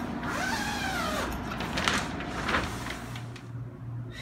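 The zipper of a plastic dust-containment door is pulled open, with crinkling of the plastic sheeting. There is a sweeping rasp in the first second, then a couple of sharper rasps, and it goes quieter near the end.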